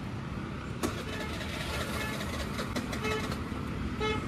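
Road traffic running steadily, with a light click about a second in and a short, faint vehicle horn toot around three seconds in.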